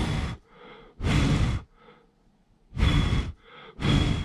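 A person blowing four short puffs of breath onto a Snap Circuits green fan blade, spinning it by hand before it is wired into the circuit.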